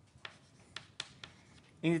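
Chalk writing on a blackboard: a handful of short, sharp chalk taps and strokes spread over about a second and a half as letters are written.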